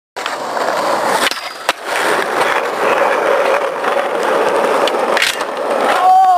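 Skateboard wheels rolling on asphalt in a steady hum. Two sharp clacks of the board come a little over a second in, and another comes about five seconds in.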